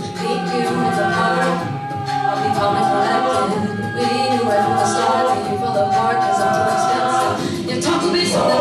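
An a cappella vocal ensemble singing close harmony, one high note held for most of the time over lower voices, with the chord changing just before the end.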